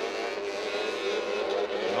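Polaris racing snowmobile engines running at speed, a steady drone holding one high pitch.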